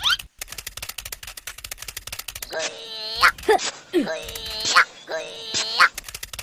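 A fast run of clicks, roughly fifteen a second, then from about two and a half seconds in several short high-pitched, sped-up cartoon voices giggling and chattering.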